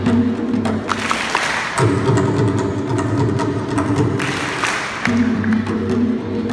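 Hand drums of a traditional ensemble, a two-headed barrel drum and a frame drum, playing a rhythm of quick strikes over a low steady tone.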